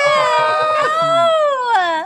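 A high-pitched, drawn-out vocal squeal lasting about two seconds, wavering and then sliding down in pitch near the end.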